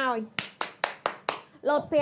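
Five quick, sharp hand claps, about four a second.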